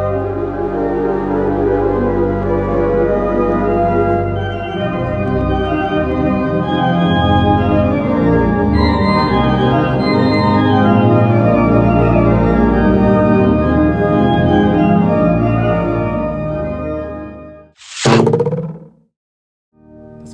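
The 1907 Seifert German-Romantic pipe organ playing sustained full chords over deep bass notes on several flute stops drawn together, a big, thick sound that stops about two seconds before the end. Just after it, a short, loud swoosh falls in pitch.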